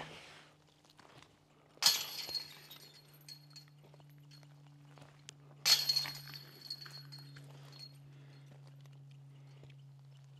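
Disc golf basket chains struck by two putted discs about four seconds apart, each a sudden metallic jangle of chains that rings and dies away over about a second.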